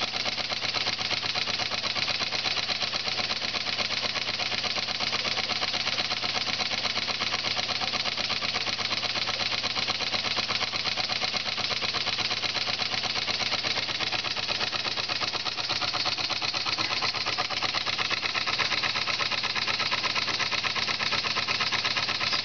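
Model steam engine (7/8-inch bore, 1 1/2-inch stroke) running fast and steady on about 15 psi of steam, with a rapid, even beat and its belt-driven generator turning with it. The governor is not hooked up, so the engine runs unregulated at full speed.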